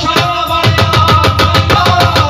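Dholak drumming a fast, steady rhythm in live folk-devotional music, with a sustained melodic note held over it from about half a second in.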